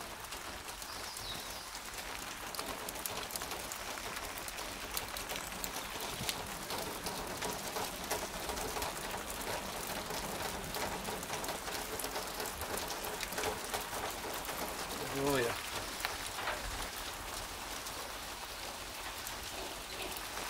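Steady rain falling, growing heavier: a continuous hiss thick with the ticks of individual drops striking nearby surfaces. A brief voice is heard about fifteen seconds in.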